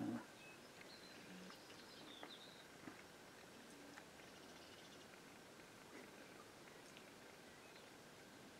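Near silence, with a few faint high bird chirps between about one and two and a half seconds in.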